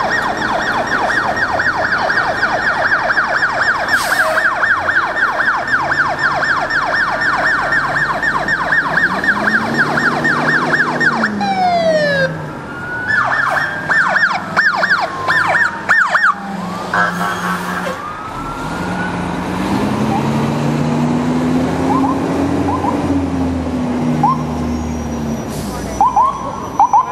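Emergency vehicle sirens on passing police cars. A fast yelp sweeps up and down several times a second for the first eleven seconds, then drops into a falling glide, yelps again and switches briefly to a quicker pattern. A deeper tone swells and falls slowly underneath, and the sirens grow sparser in the last third.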